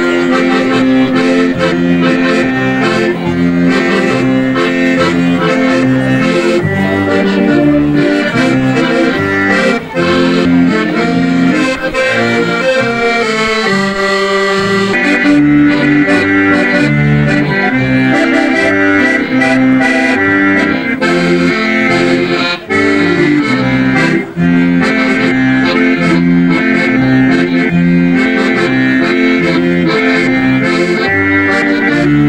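Live folk-style dance music from two piano accordions playing a tune together over a double bass, running continuously.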